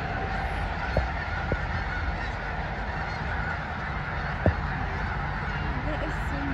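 A huge flock of snow geese calling all at once, a steady dense chorus of overlapping honks. A few brief low thumps cut through it, the loudest about four and a half seconds in.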